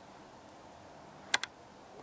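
Two sharp clicks in quick succession about a second and a half in, over a faint steady hiss.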